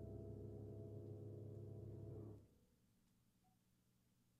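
Low, sustained ringing note of a struck instrument with many overtones, cut off suddenly about two and a half seconds in, leaving near silence.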